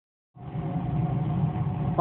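Steady mechanical hum of running laboratory equipment, starting a moment in.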